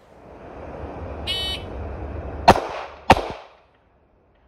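An electronic shot timer beeps once, and about a second later a handgun fires two quick shots about half a second apart, a controlled pair.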